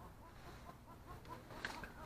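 Backyard hens clucking softly: a scatter of faint, short clucks.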